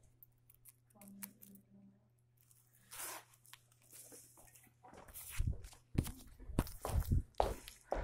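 Handling noise from a phone with its microphone covered: rustling and scraping against fabric, then a run of dull thumps and knocks in the last few seconds as it is moved. A low steady hum underneath stops about five seconds in.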